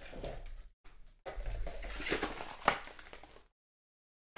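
Cardboard packaging and a crinkly bag rustling as a baseball in its bag is taken out of its box and set down, with one sharp tap near the end of the handling. The sound then cuts off suddenly.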